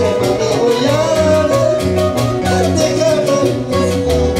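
A live band playing upbeat Latin dance music, with a bass line stepping from note to note under sustained melody lines, and some singing.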